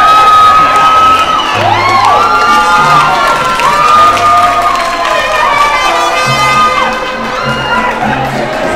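Crowd cheering and screaming with excitement, several high-pitched shrieks each held for about a second and overlapping, over background music.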